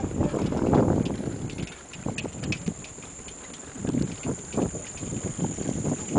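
Loose wooden planks of a footbridge knocking and clattering irregularly under bicycle tyres, with wind noise on the microphone in the first second or so.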